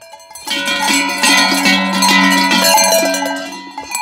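Large Krampus bells worn by costumed Krampus runners clanging and ringing together as they arrive. The ringing starts about half a second in and dies down near the end.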